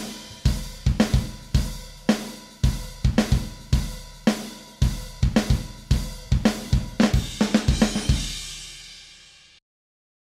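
Multi-mic live rock drum kit playing back after quantizing: kick, snare and hi-hat in a steady beat, a quick run of hits near the end, then a cymbal ringing out until playback cuts off suddenly. The hits are the edited, crossfaded slices of the drum performance.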